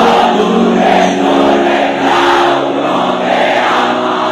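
Live band playing a Bangla pop song, loud, with a large crowd singing along in chorus.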